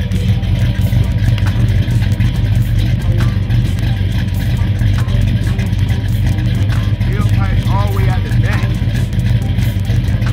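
Oldsmobile 455 big-block V8 idling steadily through long-tube headers and a 3-inch full exhaust, heard at the tailpipe.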